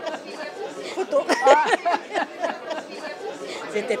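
Speech: a close voice talking over the chatter of a crowd of guests, loudest about a second in.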